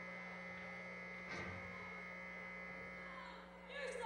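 Steady electrical hum and buzz from the stage's amplified sound system, with one soft thump about a second in. A voice starts near the end.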